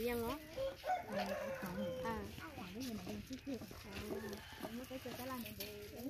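A rooster crowing once, a long held call that starts about half a second in and lasts about a second and a half, over people talking.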